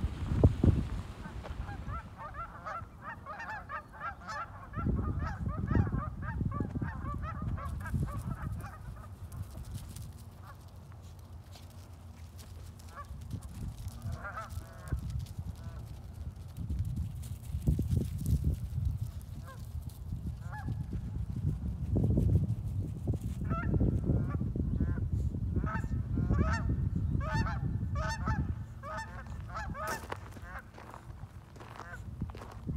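A flock of Canada geese honking, many overlapping calls, busiest over the first several seconds and again near the end, sparse in between. Spells of low, dull noise come and go underneath.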